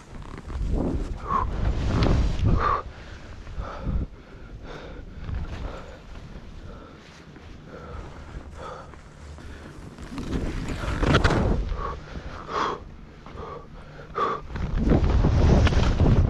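A skier's heavy breathing, with louder surges of low rushing noise from wind on the microphone and skis running through snow, about a second in, about ten seconds in and near the end.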